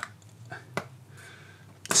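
Quiet handling of a plastic refillable ink cartridge with nitrile-gloved hands: a sharp click a little under a second in, then faint handling noise.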